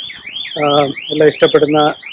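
Electronic alarm warbling without a break, its high tone rising and falling about four times a second, with a man talking over it.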